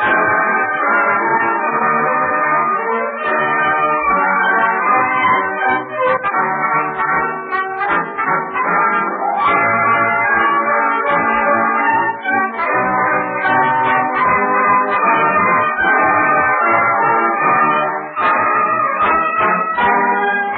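Studio orchestra playing an overture medley of Texas songs, heard through the narrow, muffled sound of a 1930s radio recording.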